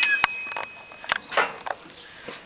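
Ringing of steel struck on a blacksmith's anvil: one clear tone fading out about a second in, with two sharp metallic taps.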